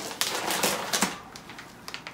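Plastic bag of frozen salmon fillets crinkling and clicking as it is picked up and handled, a quick run of crackles in the first second, then quieter with a couple of faint clicks near the end.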